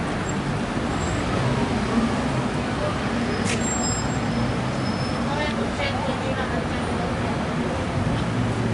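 Steady street traffic noise from passing road vehicles, with indistinct voices and a sharp click about halfway through.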